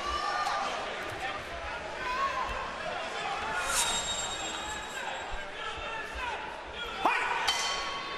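Arena crowd chattering and calling out. A short ringing ding comes about four seconds in, and a rising shout near the end.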